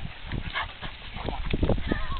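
Dogs jostling and moving close by: a run of short scuffs and knocks, with faint voices in the background.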